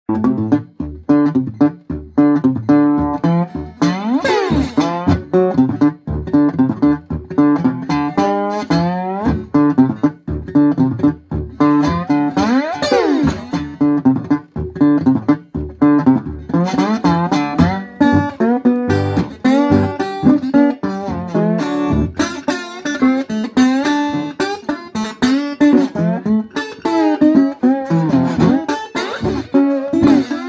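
National Trojan resonator guitar playing a traditional-style blues fingerstyle, with a bottleneck slide. Notes are picked steadily throughout, and the slide sweeps in long glides about four seconds in and again around thirteen seconds.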